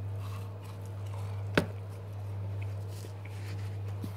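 A man chewing chips, the mouth sounds faint, over a steady low hum, with one sharp click about a second and a half in.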